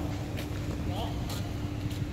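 Steady low outdoor rumble with a constant hum, a few faint short knocks, and a brief voice call near the middle.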